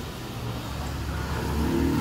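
A motor vehicle's engine rumbling and growing steadily louder as it approaches: a racket.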